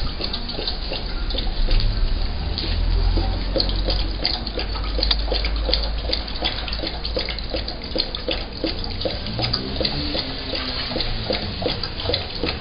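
Young Rottweiler lapping and slurping from a plastic bowl, a steady run of wet laps at about three a second.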